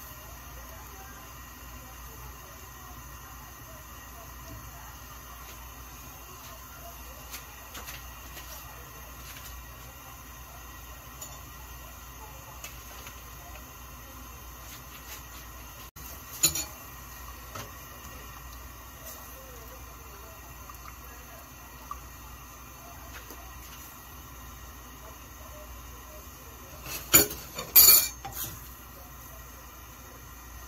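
Utensils knocking against an amber glass cooking pot while the pudding base is stirred with a wooden spoon: scattered light knocks, a sharp clink about halfway through, and a loud run of glassy clinks near the end.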